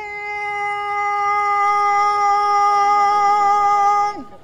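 A singing voice holding one long, steady note, growing a little louder over the first two seconds.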